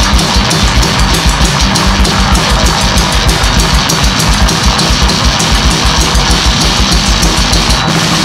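Punk rock band playing live: drum kit keeping a fast, steady beat under loud electric guitar and bass.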